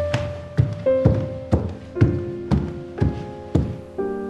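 Tense background score: low percussive beats about twice a second under single held piano notes that step downward in pitch.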